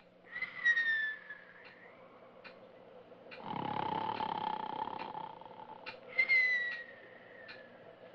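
Comic stage snoring: a rough, buzzing snore alternates with a falling whistle, and the whistle comes twice. Under it, a clock ticks steadily, about one tick every 0.8 seconds.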